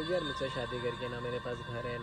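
A man's voice, with a quavering, trembling sound right at the start and choppy short syllables after it, over steady background tones.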